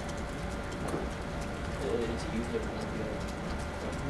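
Room tone with a steady low hum, faint murmured voices about halfway through, and scattered light clicks of laptop keys being typed.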